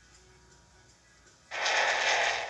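Faint steady hiss from a VHS tape's soundtrack, then about one and a half seconds in, loud music starts abruptly.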